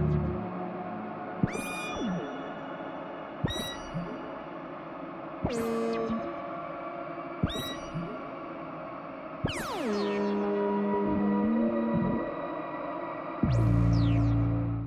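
Modular synthesizer music. About every two seconds a tone swoops down from very high and settles into a held note over a steady drone. Past the middle, a longer downward sweep leads into low held notes that step in pitch.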